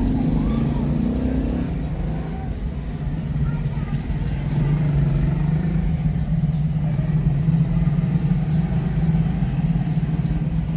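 Small motorcycle engine running steadily, growing louder from about halfway through as it comes up from behind and passes close by near the end, over general street noise.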